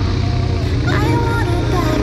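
Electronic music with a singing voice, laid over the steady running of a motorcycle engine.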